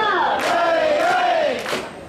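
Mikoshi bearers' voices in a long, wavering chanted call over a crowd. The call fades out near the end, and a sharp clap follows.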